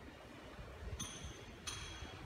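Two light, ringing clinks, one about a second in and one near the end, over a faint low background rumble.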